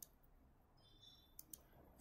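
Near silence with a few faint computer mouse clicks: one at the start and a quick pair about a second and a half in.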